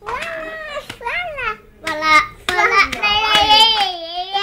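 Young children's high-pitched voices making wordless sing-song calls: a few short, bending calls, then a longer held one starting about three seconds in.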